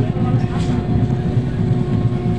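Passenger train running along the track, heard from inside the coach at a barred window: a steady low rumble, with a faint steady tone held across it.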